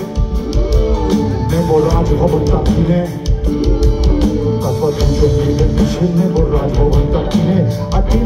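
Live rock band playing through a loud PA: drum kit, bass, electric guitar and keyboards, with a bending lead melody over them.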